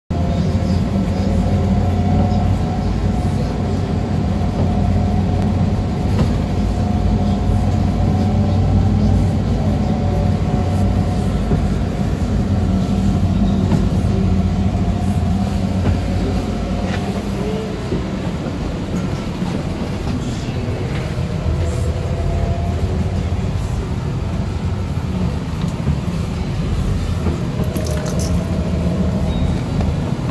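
Vehicle engine and drivetrain running steadily, heard from inside the moving vehicle: a loud low drone with a few held tones and occasional rattles.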